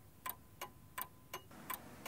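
Faint, even ticking of a clock, about three ticks a second, used as a sound effect for time passing.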